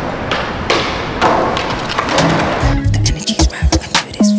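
Skateboard wheels rolling on smooth concrete with a few sharp knocks. About halfway through, background music with a deep bass beat comes in.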